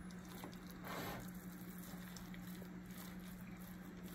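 Faint wet squishing of pulled pork being stirred into barbecue sauce in a stainless steel pot with a metal spoon, swelling briefly about a second in, over a steady low hum.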